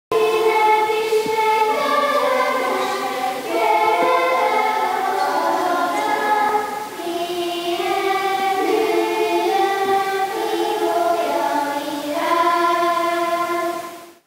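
Children's choir singing, holding notes that step from pitch to pitch; the song ends just before the end.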